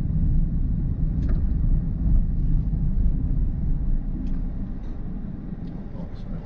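A car driving slowly over a rough, unpaved dirt track, heard from inside the cabin. There is a steady low rumble of tyres and suspension on the uneven ground, with a few faint knocks and rattles.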